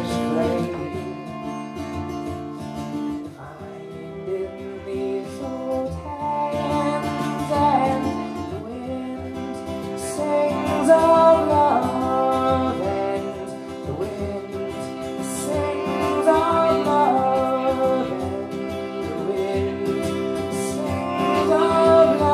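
Live acoustic folk music: an acoustic guitar played with a violin carrying a melody over it.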